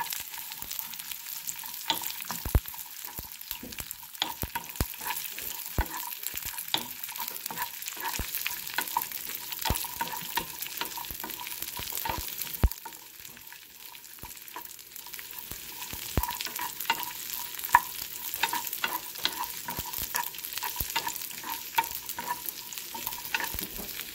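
Cashew nuts and raisins frying in a nonstick pan, with a steady sizzle, while a wooden spatula scrapes and taps the pan as it stirs them. The stirring clicks thin out briefly about midway.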